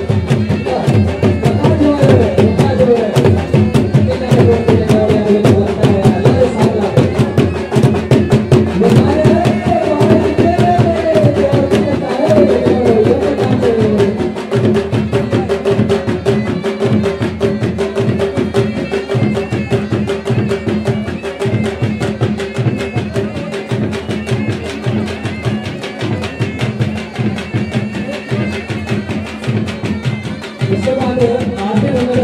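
Traditional folk music: fast, continuous drumming under a wavering melody line that settles into one long held note about halfway through.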